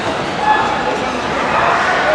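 Chatter and general noise of people in a large sports hall, with a few short high-pitched sounds over it.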